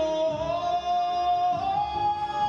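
An opera singer's voice holding a long, high sung note that steps up in pitch twice, over quieter accompaniment.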